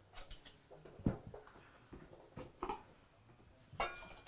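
Faint, scattered clicks and knocks of a glass jar being handled and opened, with one sharper knock about a second in.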